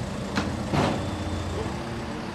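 Heavy diesel engine running steadily, with a sharp click just under half a second in and a louder short burst of noise a little later.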